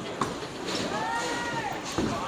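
Bowling alley noise: balls rolling on the lanes with a sharp knock a moment in. Through the middle comes a long, drawn-out voice that rises and then falls in pitch, like a held "ohhh".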